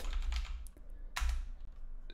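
A few keystrokes on a computer keyboard, typing a short word and confirming it.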